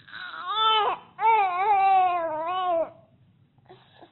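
Young baby fussing: a short rising cry, then a longer wavering cry lasting nearly two seconds.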